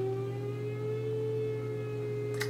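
A woman holding one long hummed "mmm" with her lips closed, at a nearly steady pitch.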